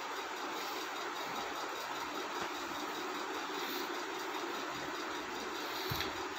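Steady, even background hiss at a low level, with no distinct sound event: the recording's noise floor between spoken lines.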